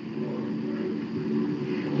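A steady low hum, several even tones held without change, in a pause between speech.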